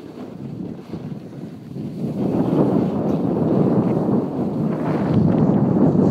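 Wind rushing over the microphone of a snowboarder's handheld phone while riding down a slope, growing louder about two seconds in.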